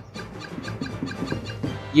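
LEGO Super Mario interactive figure wearing the Fire Mario power-up suit, tilted forward to trigger its electronic fire-throwing sound effect from its built-in speaker.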